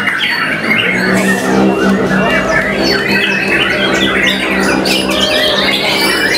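White-rumped shama (murai batu) singing a fast, varied stream of whistles, chirps and squawks. A steady low drone runs underneath from about a second in until about a second before the end.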